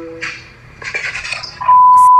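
A censor bleep near the end: a loud, steady, high-pitched beep that cuts in sharply over the talk and holds one pitch.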